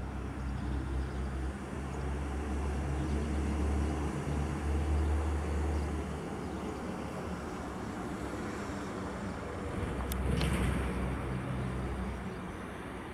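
Diesel locomotive SU160-002 running at low speed while shunting, its engine giving a steady low drone that swells a little and eases off again. About ten seconds in, a short sharp clatter sounds over it.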